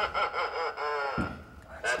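Cackling laugh from a talking Halloween decoration, a quick run of 'ha-ha' pulses that stops a little over a second in. The same recorded voice starts 'Happy Halloween!' again near the end.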